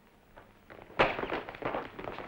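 Near silence, then about a second in a rapid, irregular run of sharp clicks and knocks begins.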